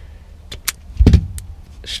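Self-adjusting wire stripper squeezed shut on a thin wire to strip its insulation: a couple of light clicks, then a dull thump about a second in as the handles close.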